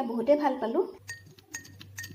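A metal spoon clinking against a drinking glass a few times as a drink is stirred, starting about a second in after a woman's voice, over a low steady hum.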